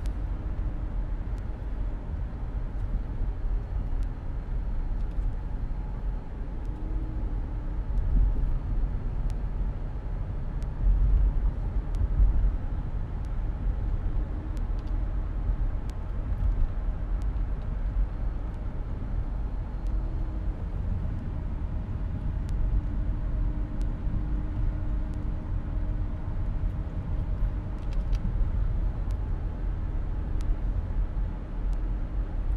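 Steady low rumble of a car's engine and tyre road noise heard from inside the cabin while driving, swelling briefly a couple of times near the middle.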